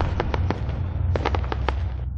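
Logo outro sound effect: a low, steady rumble with two quick flurries of sharp crackles, like firework pops.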